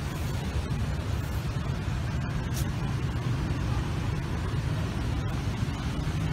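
Steady low rumble of city road traffic, with no single vehicle standing out.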